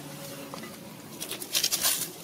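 A close burst of crackling and rustling, loudest near the end, from a macaque handling something at its mouth right by the microphone.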